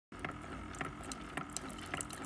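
Single-serve pod coffee maker dispensing a thin stream of coffee into a ceramic mug: a steady, soft trickle with occasional light ticks.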